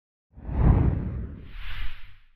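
Whoosh sound effect of an animated logo sting. It starts about a third of a second in with a deep rushing swell, then gives way near the end to a higher, hissing swish that fades out quickly.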